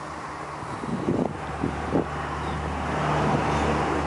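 A V8 engine idling with a steady low hum that grows louder toward the end. A few soft knocks sound in the middle.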